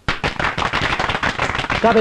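A small group of people clapping, a dense patter of claps that starts suddenly and is cut off after nearly two seconds by a man's voice.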